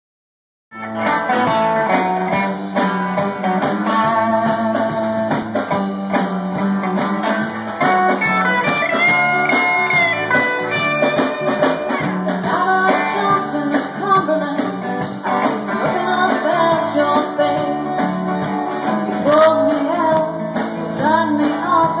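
A live band plays a song on acoustic guitar, electric guitars and a drum kit. The music starts suddenly just under a second in.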